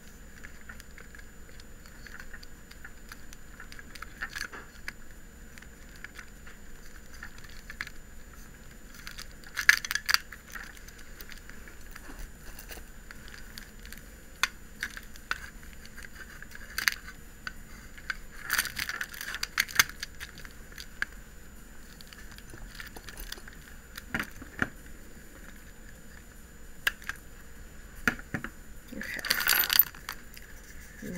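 Scattered light clicks and clinks of a plastic Blythe doll head and glass beads being handled, over a faint steady hiss. Near the end there is a louder cluster of clattering as a beaded string is lifted.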